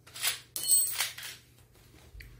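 Small metal parts at a bicycle's rear hub clinking and scraping under hands, in two quick bursts within the first second and a bit, with a light high metallic ring.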